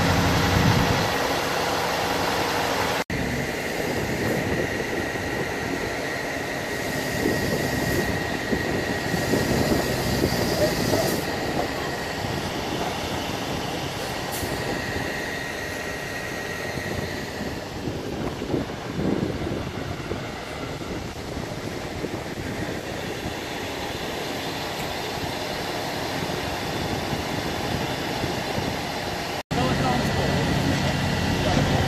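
Fire truck engine running steadily, with a thin high whine through the first half, and indistinct voices.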